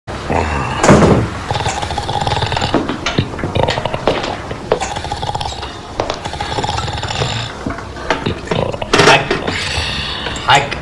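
A man snoring loudly in bed. The loudest snores come about a second in and again near the end.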